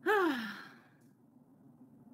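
A woman sighs once out loud. The sigh falls in pitch and fades within about half a second.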